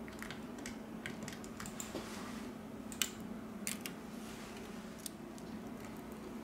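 Scattered small clicks and taps of fingers handling a smartphone's middle frame and a flex cable, the loudest about three seconds in, over a faint steady hum.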